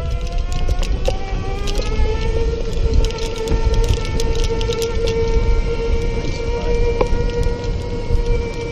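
Golf cart's drive motor whining while driving along a paved cart path, its pitch rising over the first couple of seconds and then holding steady, over a low rumble and scattered clicks.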